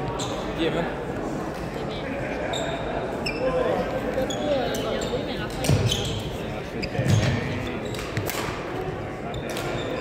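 Busy gymnasium ambience: sneakers squeaking on the hardwood floor, voices in the hall and a couple of dull thuds about six and seven seconds in, all with a hall echo.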